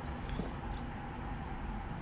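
Quiet room tone with faint handling sounds as a metal crochet hook is picked up off a cloth-covered table and slipped into a yarn slip knot, with one small tick about three-quarters of a second in.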